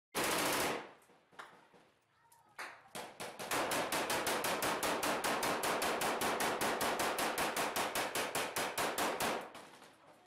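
Close automatic rifle fire: a short burst at the start and a few single shots, then a long sustained burst of rapid shots, about eight a second, lasting some six seconds.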